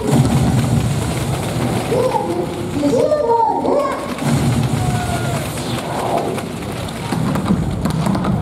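Echoing ambience of a large indoor sports hall: indistinct voices calling out in short fragments over a dense low rumble of crowd and hall noise.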